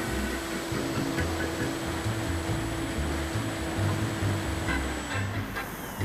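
Background music over the steady whine and rushing wind of the Radian XL's electric motor and propeller under power; about five seconds in the motor is cut and its tone falls away.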